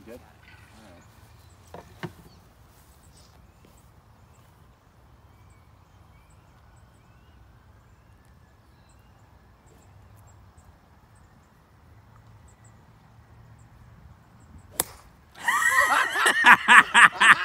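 A golf club striking an exploding prank golf ball: one sharp crack near the end as the ball bursts into powder, followed immediately by loud laughing.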